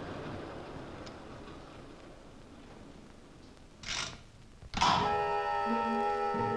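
Two short mechanical clacks from a train destination-indicator mechanism, about four and five seconds in, over faint hiss. Orchestral music with held string notes starts right after the second clack.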